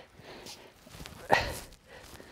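Soft strokes of a grooming brush on a horse's coat, with one short, sharp knock a little past the middle.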